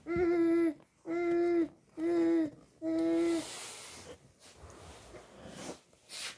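A baby vocalising in short, steady-pitched calls, four in a row, each about half a second long, followed by softer, breathy noise.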